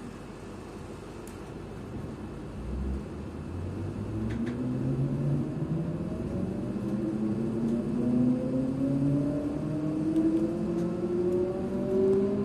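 Electric passenger train's traction motors whining as the train pulls away and accelerates, the pitch rising steadily and the sound growing louder.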